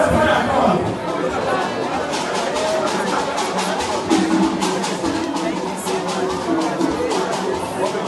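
Chatter of a crowd's voices, with music of quick, sharp percussion strokes and a few held tones coming in about two seconds in and carrying on under the voices.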